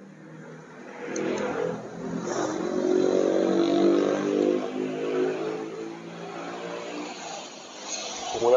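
A motor vehicle's engine passing close by, growing louder over the first few seconds, loudest around the middle, then fading away. A couple of sharp clicks of nail clippers come about a second in.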